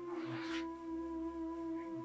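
Soft new-age background music of steady held tones, with a brief breathy hiss about half a second in.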